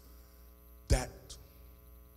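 Faint steady electrical mains hum, a buzz of many even tones, with a single short spoken word about a second in.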